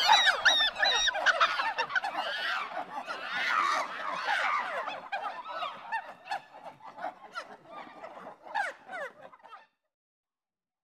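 Many overlapping shrieking, chattering creature cries, monkey- and chimpanzee-like, voiced as a pack of snarling grasshoppers. Dense at first, they thin out and fade from about halfway, then stop abruptly just before the end.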